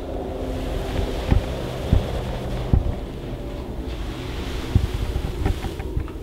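Steady low rumble of a handheld camera's microphone and handling noise while it is carried, with a few soft thumps from footsteps.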